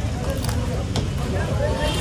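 Street background noise: a steady low traffic rumble with indistinct voices, and two faint clicks about half a second and one second in.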